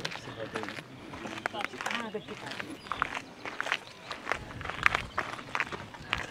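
Indistinct chatter of passers-by with footsteps on a gravel path, the steps giving short irregular crunches.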